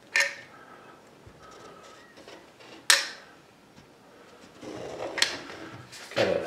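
Caulking gun laying a bead of adhesive caulk: three sharp clicks about two and a half seconds apart as the gun is worked, with rustling handling noise near the end.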